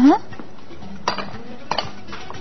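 Kitchen dishes and utensils being cleared off a counter. Two sharp, brief clinks, about a second in and again just before the end.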